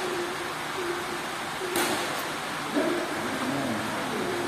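A badminton racket strikes a shuttlecock with a sharp crack a little under two seconds in, followed by a fainter click, over a steady hiss of hall noise and faint distant voices.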